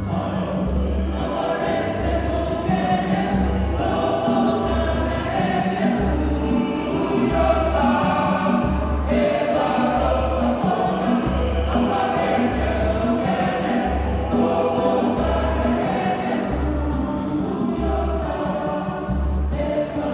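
Mixed African choir of women and men singing a traditional song together, over a steady low beat about once a second.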